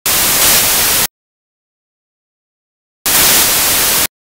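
Two bursts of loud static hiss, each about a second long and about three seconds apart, switching on and off abruptly against dead silence.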